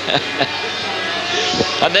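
Racing sidecar outfits' engines running at speed on the circuit, a steady noise with one engine note climbing slightly, under TV commentary. A commentator laughs at the very end.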